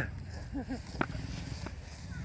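A short "ah" and a brief laugh, with a sharp click about a second in.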